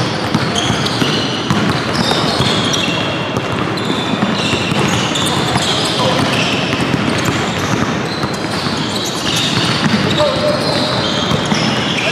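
A basketball being dribbled on a hardwood gym floor, with the short high squeaks of sneakers on the court throughout, and voices in the background.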